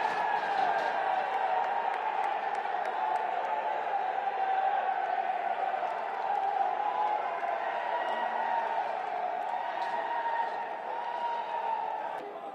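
A group of voices cheering and shouting together in celebration of a goal just scored, a steady mass of yelling.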